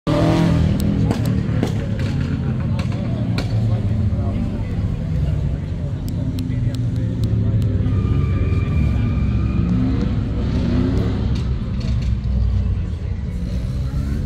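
A car engine running with a steady low rumble, under people talking. A held high tone sounds for about two seconds, about eight seconds in.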